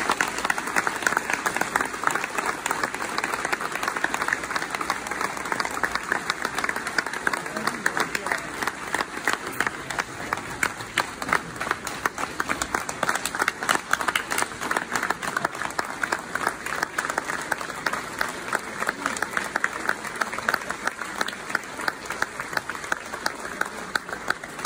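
Audience applauding steadily, a dense patter of many hands with sharper, louder claps from hands close by.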